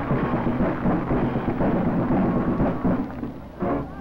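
Marching band playing, heard through an old, distorted field recording: mostly drums and a dense low rumble with little clear melody. The sound drops briefly near the end, and held horn chords come in just after.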